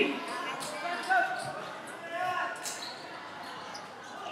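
A basketball bouncing on an outdoor court, a few separate thuds, under the background chatter of a crowd of spectators.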